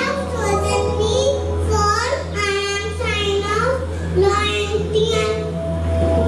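Young children singing into microphones over backing music with a steady low bass and held notes.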